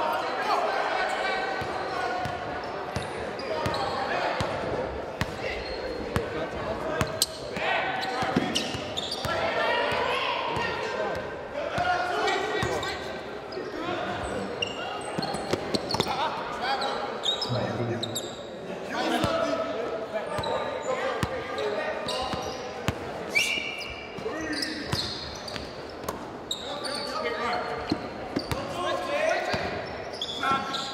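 Basketball dribbled on a hardwood gym floor, a run of sharp bounces, under indistinct shouts and chatter from players and spectators that echo through the hall.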